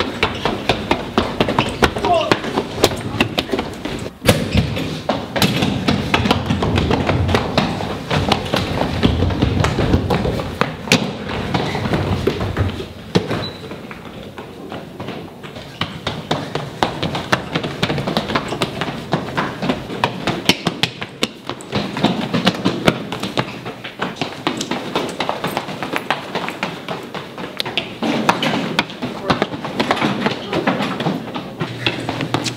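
Running footsteps slapping and thumping on a hard tiled hallway floor, with heavy breathing and gasping from the runners.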